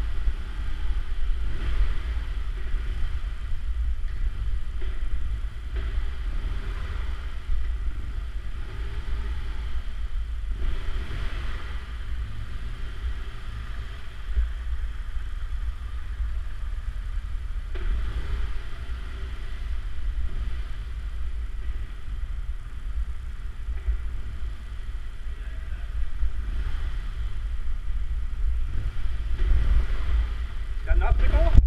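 Motorcycle engine running at low speed through a slow obstacle course, heard through a camera mounted on the bike, a deep steady rumble that swells a few times as the throttle is opened.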